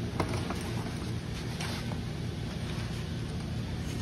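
Workshop room noise: a steady low hum with a few faint clicks near the start and around the middle.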